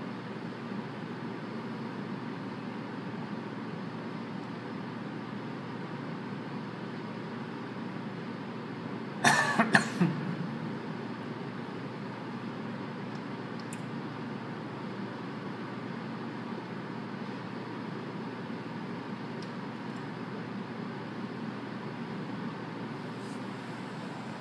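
Steady outdoor background noise, with a short cough from close to the microphone about nine seconds in.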